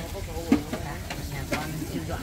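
Steady crackling sizzle of food frying at a street-food stall, with a sharp click about half a second in.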